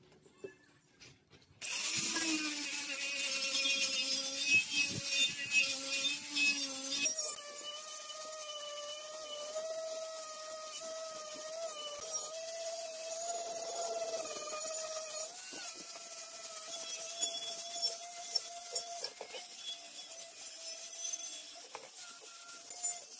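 Angle grinder with a wire brush wheel starting about two seconds in and running steadily, its motor whine over the harsh scratching hiss of the wire scouring rust off a steel motorcycle fuel tank. The whine steps up in pitch about seven seconds in.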